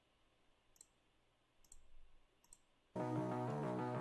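A few sharp computer-mouse clicks, then music starts abruptly about three seconds in.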